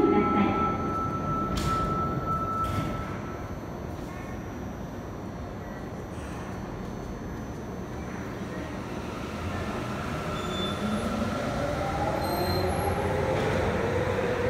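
Sapporo subway Namboku Line rubber-tyred train running. In the second half its motor whine climbs steadily in pitch and grows louder as the train picks up speed.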